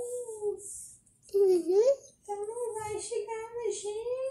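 A child's voice singing in a sing-song line at a fairly steady pitch, with a short break a little after one second and a swoop up and down just before two seconds.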